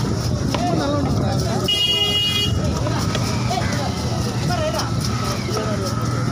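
Busy market bustle: people talking and traffic going by, with a vehicle horn sounding once for about a second, roughly two seconds in.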